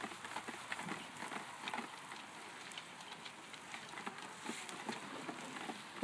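Wood fire burning under a mesh grate, crackling with irregular sharp pops over a steady hiss.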